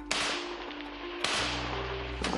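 Two sharp cracks about a second apart, each trailing off over about a second, over a low steady drone.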